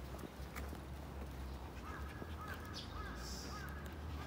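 Faint outdoor background: a steady low hum, a few faint taps, and a short run of faint bird calls a little after halfway.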